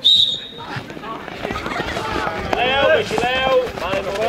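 A short, shrill whistle-like blast at the race start, then spectators shouting and cheering in high voices as a pack of children sets off running, with scattered footfalls on grass.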